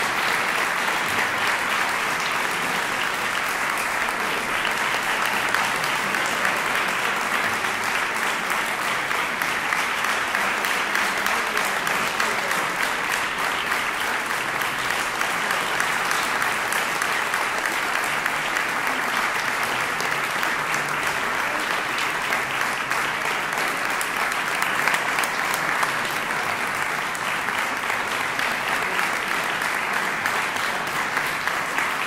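Audience applauding, a dense steady clapping of many hands.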